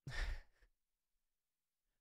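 A man's short sigh into a close microphone, lasting about half a second at the start.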